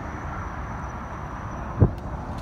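Wind rumbling on the microphone over open water, with a faint steady high tone. A single low thump near the end.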